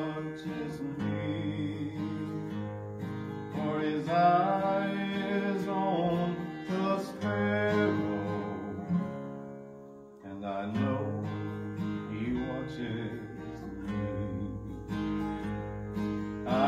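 Steel-string acoustic guitar strummed as a hymn accompaniment, with a man's voice holding a few long, wavering sung notes. The music thins briefly about ten seconds in before the strumming picks up again.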